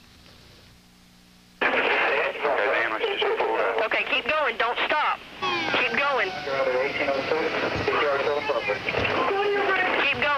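Radio voice chatter, the voices sounding as if through a radio speaker and not clear enough to make out, starting suddenly about a second and a half in after a low hum.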